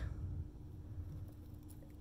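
Quiet room tone: a low, uneven rumble and a faint steady hum, with no distinct sound from the skull being handled.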